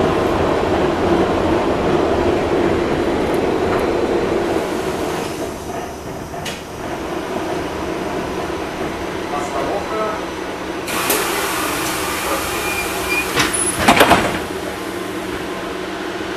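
LM-99AVN tram running along the rails, then quieter as it slows. About two-thirds of the way in a hiss starts, and near the end a short loud clatter follows, matching the doors working at a stop.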